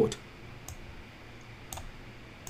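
Two sharp computer mouse clicks about a second apart, over faint room hiss.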